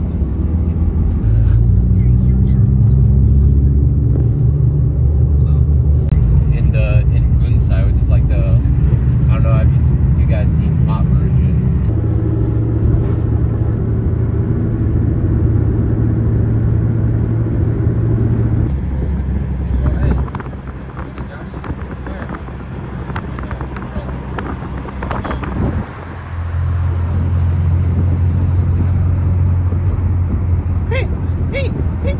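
Engine and road drone heard inside the cabin of a moving Mitsubishi Lancer Evolution VI, with its turbocharged 4G63 four-cylinder. The steady drone shifts in pitch a few times, and goes quieter for several seconds about two-thirds of the way through.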